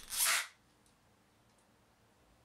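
A short breath, a hiss about half a second long at the very start, then near silence.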